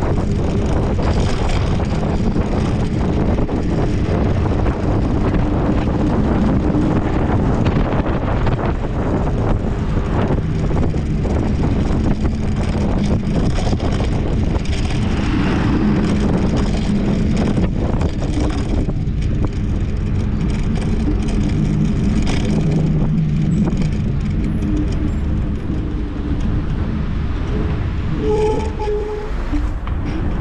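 Steady wind rush over the microphone and road noise from an electric scooter riding in city traffic, with the running engines of nearby cars. A faint low hum comes and goes beneath the noise.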